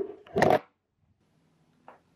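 A single short knock or bump about half a second in, followed by near-silent room tone with a faint click near the end.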